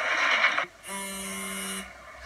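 A mobile phone buzzing on vibrate: one steady buzz about a second long, starting about a second in and cutting off suddenly, an incoming call that is being ignored.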